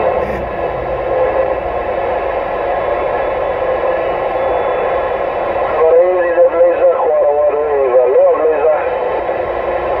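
Uniden Grant XL CB radio receiving through its speaker: a steady hiss of static, with another station's voice breaking through about six seconds in, too garbled to make out.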